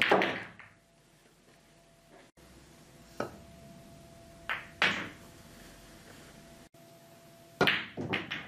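Pool balls clacking and a cue tip striking the cue ball: a loud clack right at the start that rings briefly, a few single clicks around three and five seconds in, and a loud sharp cluster of clacks near the end.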